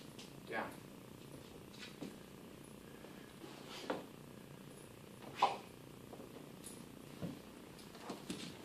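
Beagle-basset puppy making a handful of short snuffles and scuffles while rolling over on the floor after a food lure, the loudest about five and a half seconds in.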